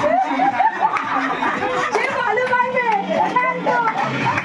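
Several people talking over one another and laughing, a lively group chatter in a room.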